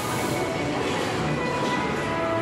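Steady ambient noise of a large indoor shopping-mall food court, a continuous rush of room noise with faint background music underneath.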